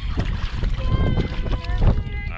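Wind rumbling on the microphone over water sloshing around hands in the shallows as fish are let go, with short voiced exclamations about a second in and near the end.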